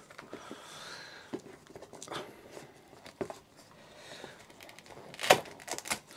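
Handling noise as a braided earphone cable is taken out of a zippered hard carrying case: faint rustling and small scattered knocks, with one sharper, louder sound near the end.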